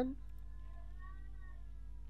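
Steady low electrical hum on the recording, with a faint pitched sound in the background that rises and then falls over about a second and a half.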